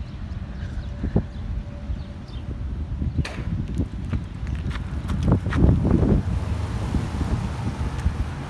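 Footsteps on gravel, irregular crunches that come thicker and louder about five to six seconds in, over wind rumbling on the phone's microphone.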